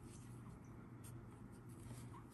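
Faint scratching and a few light ticks of a metal crochet hook being worked through yarn, over a low steady hum.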